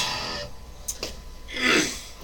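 Electric guitar's last picked notes ringing out and fading as the playing stops, followed near the end by a short, sharp breath in.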